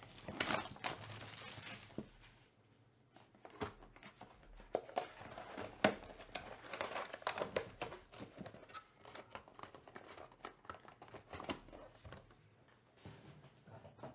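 Plastic shrink-wrap crinkling and tearing as it is peeled off a 2024 Topps Chrome Black cardboard card box, loudest in the first two seconds. Then scattered rustles and taps, with one sharp click about six seconds in, as the cardboard box is opened and handled.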